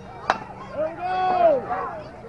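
A baseball bat hitting a pitched ball once, a single sharp crack, followed at once by spectators and players yelling as the batter runs.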